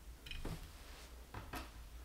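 Faint handling noise of small screws and metal parts being fitted by hand to a laser engraver's module mount: a light click about half a second in and two more around a second and a half in.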